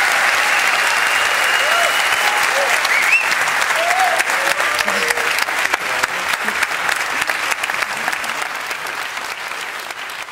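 Audience applauding, with a few cheers and a whistle in the first half, fading out toward the end.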